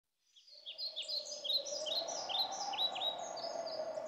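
Birds chirping, many quick overlapping chirps, over a steady low background noise, fading in from silence.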